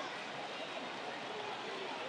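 Steady, even wash of stadium ambience noise on the match broadcast, with no distinct events.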